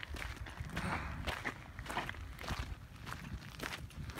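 Footsteps of a person walking on a gravelly dirt trail, about two steps a second, over a low steady rumble.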